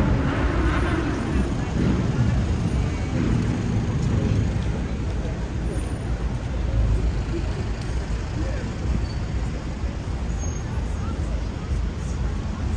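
City street traffic: a steady low drone of road vehicles, with people's voices clearest in the first two seconds.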